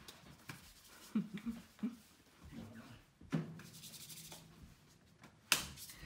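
Quiet rubbing and handling noises at a piano, with two sharp knocks, the louder near the end, and a brief faint murmur of a low voice about a second in.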